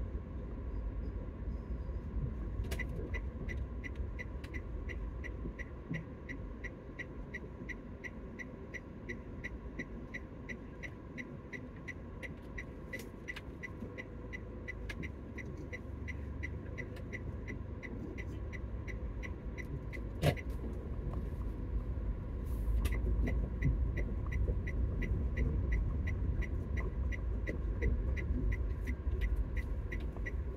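Car running slowly, heard from inside the cabin, with a steady, evenly spaced ticking of the turn-signal indicator. One sharper click comes about two-thirds of the way in, and the engine rumble grows louder near the end.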